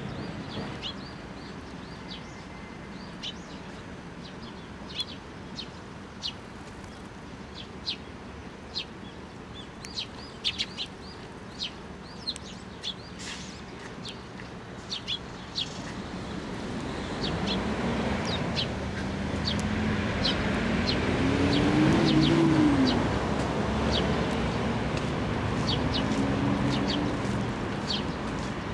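Eurasian tree sparrows giving short, scattered chirps. In the second half a low engine hum swells up, wavering in pitch, and becomes the loudest sound before easing off near the end.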